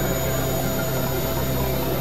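Electronic synthesizer drone: a steady, dense wash of noise with several sustained tones held under it, low and high, unchanging.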